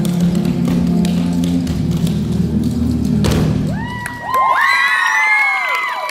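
Clogging shoe taps on a wooden stage over recorded dance music, ending in one loud final stomp a little over three seconds in. The music then stops and the audience cheers and whoops with many high, overlapping calls.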